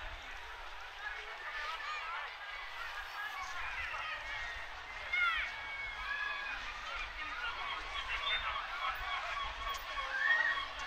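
Hubbub of a seaside crowd talking, with seagull cries over it. The loudest is a quick cluster of arching calls about five seconds in.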